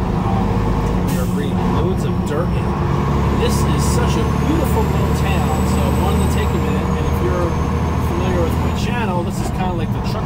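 Semi-truck's diesel engine droning steadily, heard from inside the cab while driving. A thin high whine comes in about three seconds in and stops about nine seconds in.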